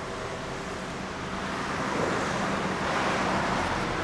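Road vehicle noise: a steady low engine hum with a wash of traffic noise that grows louder about two seconds in and then holds.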